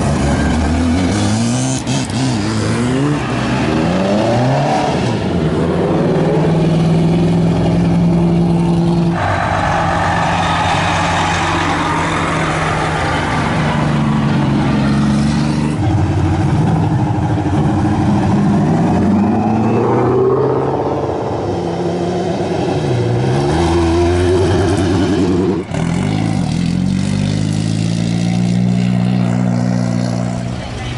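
Race cars driving past one after another, their engines revving up and down through gear changes and holding steady notes between. The engine sound changes abruptly about a third of the way in, near the middle and again near the end as one car gives way to the next.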